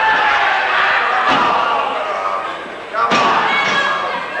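A wrestler's body hitting the ring canvas: a small thud just over a second in, then a loud slam about three seconds in. Voices shout throughout.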